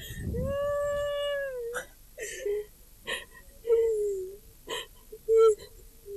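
A woman's long, high wail of nearly two seconds, followed by short sobbing whimpers and broken cries.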